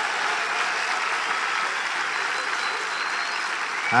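A congregation applauding steadily.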